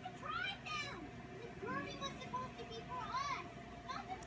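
High-pitched, child-like voices calling and chattering in short rising and falling phrases, over a steady faint hum.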